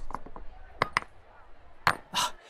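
Several sharp knocks and clatters, scattered and uneven, the loudest near the end: a bag of bricks spilling and hitting the ground.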